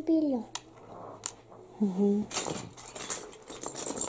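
Small plastic toy bricks clicking against each other and the wooden table, then, a little past halfway, a longer rustling clatter as a fabric storage basket is handled and set on the table.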